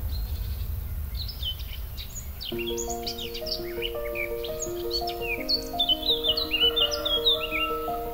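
Small birds chirping in quick, high notes over a soft instrumental music track. A slow melody of held notes enters about two and a half seconds in, and the chirping is loudest near the end.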